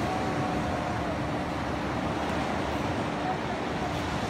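Steady rushing noise of beach surf and wind on the microphone, even in level throughout, with a faint steady low hum under it.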